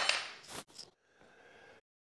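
A short metallic click about half a second in, with a smaller tap just after, as small hardware is handled on a wooden workbench; then near quiet.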